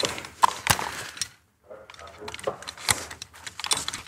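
Metal rope access hardware (carabiners and descender) clinking and clicking as the technician handles it on the rope, a scatter of sharp irregular clicks with a brief silent gap about a second and a half in.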